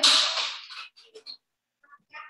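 A child's short, breathy burst of laughter right after a drawn-out word, followed by a few faint clicks about a second in.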